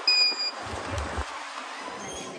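A single short, high-pitched electronic beep lasting under half a second, followed by a brief low rumble.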